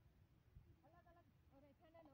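Near silence, with faint distant voices about a second in.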